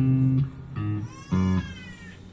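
Electric bass guitar playing three short, low, separated notes, joined in the second half by a high sliding tone that arches up and then down.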